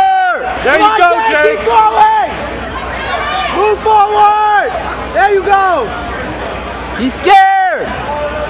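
Spectators shouting and yelling encouragement, a string of loud yells over a steady crowd murmur, with an especially loud yell near the end.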